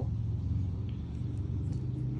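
A steady low background rumble with a low hum.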